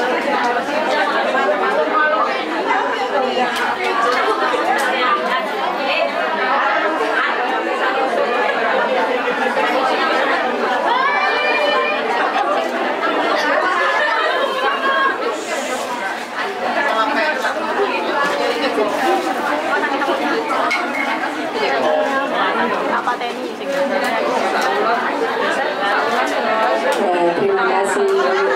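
Many people talking at once: steady crowd chatter in a large hall, with no single clear voice.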